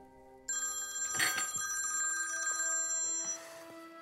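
A phone ringing: a ring tone starts suddenly about half a second in and runs for nearly three seconds, then cuts off as the incoming call is picked up.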